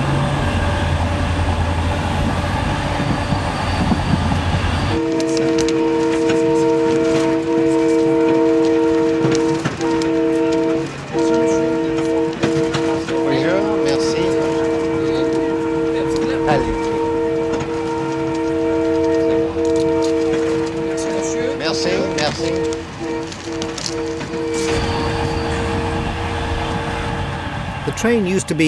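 A passenger train running, a heavy low rumble for about the first five seconds. Then a held chord of several steady tones comes in, broken by a few short gaps, and lasts until near the end over quieter train noise.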